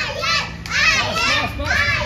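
Young girls cheering, calling "yeah" again and again in high voices.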